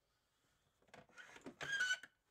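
A plastic BMW engine cover being handled and pulled off its mounts. There are a few faint knocks and rustles, then a short plastic squeak near the end.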